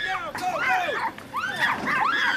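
A Chihuahua barking in a rapid run of short, high-pitched yaps.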